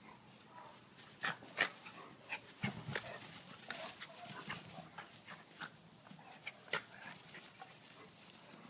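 Dogs play-fighting: a scatter of short, sharp dog yips and whimpers with irregular knocks and rustles, the loudest about a second and a half in and again near the end.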